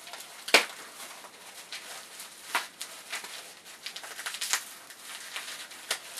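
Packing wrap crinkling and crackling as a bottle is unwrapped by hand, with irregular small crackles throughout and a sharp crack about half a second in and another after about two and a half seconds.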